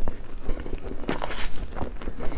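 Close-miked chewing of a mouthful of soft cream-filled crepe roll cake: wet, sticky mouth clicks and smacks, with a few sharper ones about a second in and near the end.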